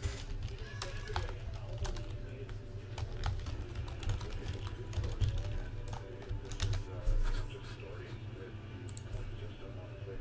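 Computer keyboard being typed on in irregular runs of key clicks that thin out in the last couple of seconds.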